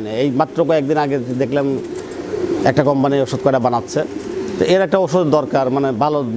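Pigeons cooing in a loft, several low, wavering coos overlapping with short breaks between them.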